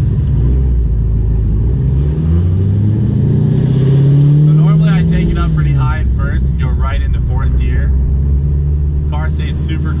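Supercharged C7 Corvette V8 with headers and aftermarket exhaust accelerating from a standstill, heard from inside the cabin. The engine note climbs, drops at an upshift about five seconds in, then runs steadily at low revs as the car keeps gaining speed.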